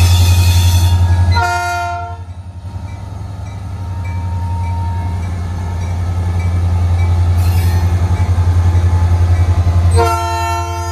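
Norfolk Southern six-axle diesel locomotive passing close, its engine a steady low drone. It sounds a short multi-note horn blast about a second and a half in and starts another right at the end, with a high hiss in the first second.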